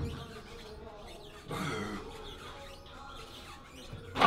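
A man's strained grunt or forced breath during a heavy rep on a plate-loaded shoulder press machine, about one and a half seconds in, after a low thump at the very start.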